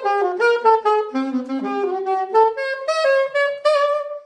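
Alto saxophone playing a quick improvised jazz line of short notes. It dips to its lowest notes about a second in, climbs again, and ends on a longer held note.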